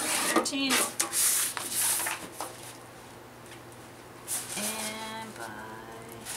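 A large sheet of paper sliding and rustling on a paper cutter's board as it is lined up against the guide, heaviest in the first two seconds. Near the end comes a short, wordless hummed vocal sound lasting about a second.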